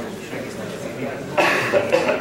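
Low, indistinct talk from people in a room, with a sudden loud cough about one and a half seconds in.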